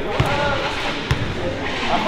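A basketball bouncing on a hardwood gym floor, two bounces about a second apart, over background voices in the gym.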